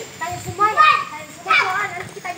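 Children's high-pitched voices calling out, in two loud stretches: one from about half a second in, another near the end.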